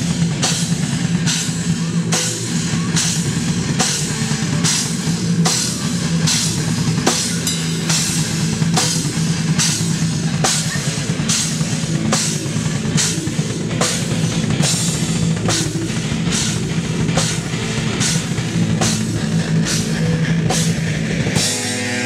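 Live metal band playing a slow, heavy riff: low distorted guitars over a drum kit, with a cymbal crashing on a steady beat a little under twice a second. Near the end the riff changes.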